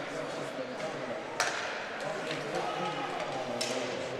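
Ice hockey arena sound during live play: the rink's steady background with faint, indistinct voices, and a single sharp click about a second and a half in.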